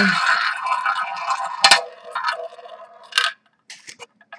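Ball rolling round a spun tabletop roulette wheel: a steady rattling whir that fades, broken by a few sharp clicks as the ball bounces over the pocket dividers. It settles into a pocket about three seconds in.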